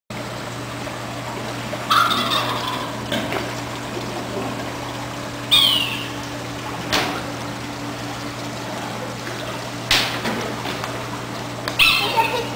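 About five short, sudden calls, spaced a few seconds apart, some falling in pitch, over a steady low hum.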